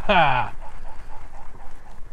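A man's laugh trailing off, its pitch falling over the first half second. After that only faint low background noise remains.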